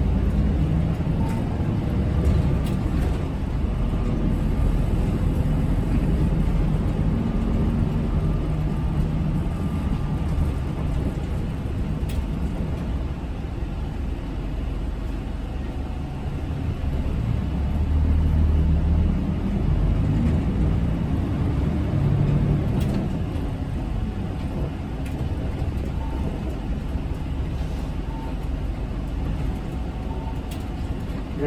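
City route bus running along a street, heard inside the cabin from the front: a steady low engine and road rumble that eases off around the middle and swells again as the bus picks up.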